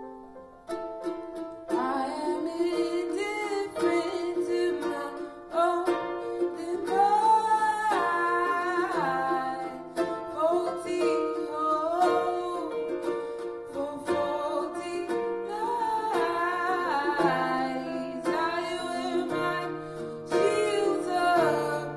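A woman singing to her own ukulele strumming, with an electric stage piano playing held chords and bass notes underneath; the strumming comes in about a second in, and the voice carries most of the melody from about the middle on.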